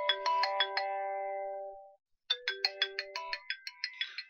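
A phone ringtone: a short melody of quick chiming notes, played twice with a brief pause between.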